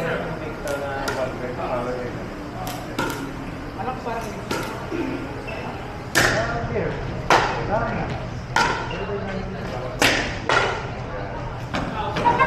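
Pickleball rally: paddles hitting a hollow plastic pickleball with sharp pops, roughly one a second. The hits in the second half are louder and ring on in the hall, over faint voices.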